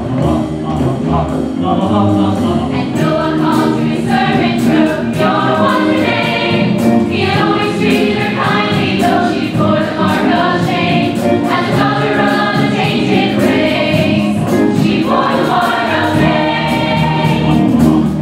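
A musical-theatre chorus singing with a live pit band, over a steady percussion beat.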